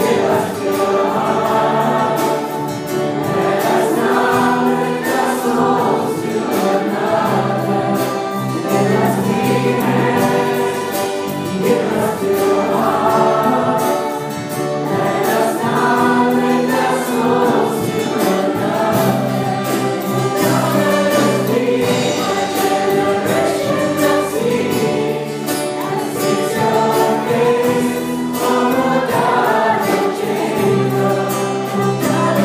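A church congregation singing a worship song together.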